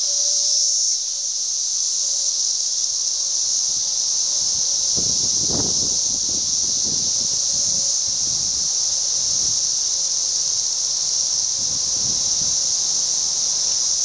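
A dense chorus of Brood X 17-year periodical cicadas: a loud, steady, high-pitched drone. It is joined by a few brief low rumbles about five seconds in and again near the end.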